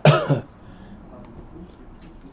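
A man clearing his throat, one short rough burst at the very start.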